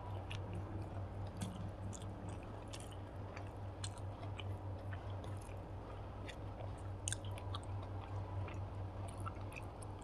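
Close-miked chewing of a hand-eaten mouthful of rice and fried okra, with many small, crisp mouth clicks scattered throughout. A steady low hum runs underneath.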